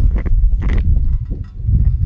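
Wind rumbling on the microphone, broken by a couple of short sharp sounds, the louder one under a second in.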